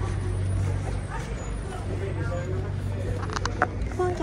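Indoor background ambience: a steady low hum with faint, indistinct voices, and a single sharp clink near the end.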